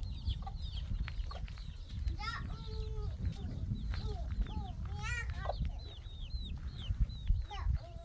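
Chickens calling: a busy run of short, high chirps that fall in pitch, broken by a few longer, louder clucking calls about two and five seconds in. A steady low rumble of wind on the microphone runs underneath.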